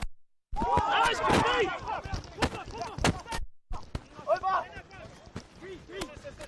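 Rugby players shouting and calling over one another on the pitch during a tackle and ruck, with a few sharp knocks mixed in. The sound cuts out completely twice, briefly.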